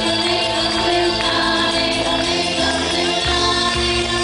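Live folk song: a woman singing into a microphone over held notes, with a low bass line that steps to a new note about two and three seconds in.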